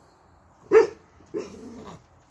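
A dog barking at a hedgehog: two barks, a short loud one about three-quarters of a second in and a fainter, longer one about half a second later.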